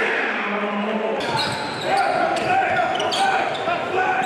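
A basketball being dribbled on a hardwood gym floor, starting about a second in, under the voices of a crowd.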